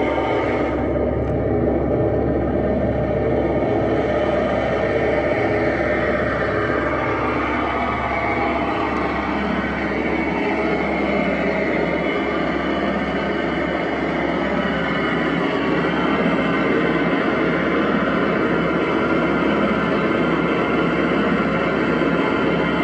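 Live experimental electronic noise from a tabletop rig of wired electronics: a dense, steady rumbling drone over a constant low hum, with a tone sliding slowly downward partway through.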